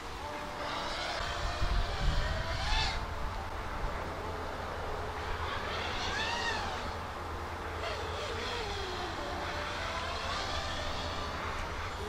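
EMAX Hawk 5 five-inch FPV racing quadcopter in flight, its motors whining and swelling up and down in pitch as the throttle changes, the clearest swell about halfway through.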